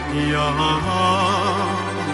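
Albanian folk song: a man singing a long, wavering, ornamented line over the band's accompaniment, whose bass note shifts a little under a second in.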